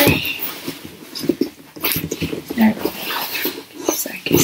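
Rummaging in a cardboard box: paper and packaging rustling and items being handled in irregular short bursts, with one brief high-pitched whine about two-thirds of the way through.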